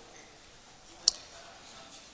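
A single short, sharp click about a second in, over faint steady room hiss.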